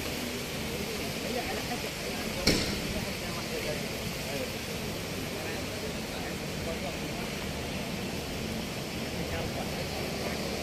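City street ambience: a steady wash of traffic noise and crowd voices, with one sharp bang about two and a half seconds in.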